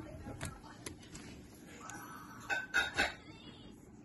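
A few light clicks and clinks from a small dog moving about on a tile floor, with a denser cluster of them past the middle.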